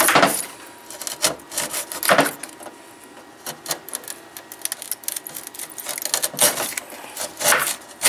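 Knife blade scraping through and crushing the thin aluminium fins of a car radiator, clearing them away from a punctured tube. Irregular scraping strokes, the loudest about two seconds in and twice near the end.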